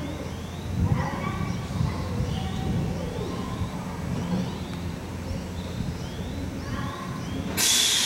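Series 383 electric train standing at the platform with a steady low rumble, while small birds chirp repeatedly in short rising notes. A low thump sounds about a second in, and a loud hiss starts suddenly just before the end.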